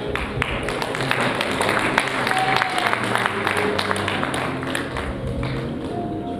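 Audience applauding over background music; the clapping fades out near the end.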